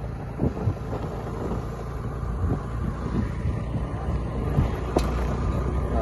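Motor scooter's engine running steadily while riding, with wind rumbling on the microphone. A single sharp click about five seconds in.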